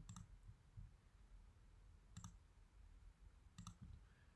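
A few faint clicks of a computer pointing device over near silence: one right at the start, one about two seconds in, and a quick pair near the end.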